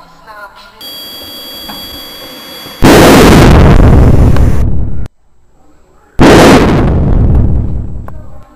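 Explosion sound effect for a jet blowing up. A steady high whine comes first, then a very loud blast about three seconds in that cuts off abruptly, then a second loud blast about a second later that dies away near the end.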